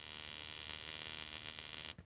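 Slight sparking noise from a 12 kV battery-powered gas burner igniter module: a rapid, even train of high-voltage sparks making a steady crackling buzz. It cuts off suddenly near the end.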